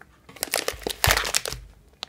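A plastic packet of loose black tea crinkling as it is handled and pulled off a cupboard shelf, for about a second.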